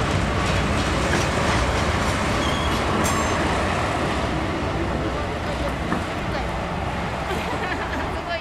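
Steady low rumble and hiss of a steam train standing at a station platform, with voices of people on the platform mixed in.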